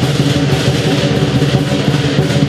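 Lion dance percussion: a large Chinese drum beaten in rapid strokes under constantly clashing cymbals, playing without a break.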